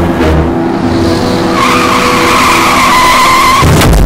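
Loud intro theme music with steady low tones under a long high screech sound effect that starts about a second and a half in. A heavy hit lands just before the end.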